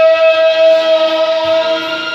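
Home karaoke: amplified singing through a microphone over a backing track, with one long note held steady that ends near the end.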